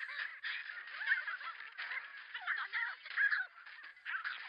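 Cartoon soundtrack playing back: a dense clamour of many short, high cries overlapping one another, thinning out near the end.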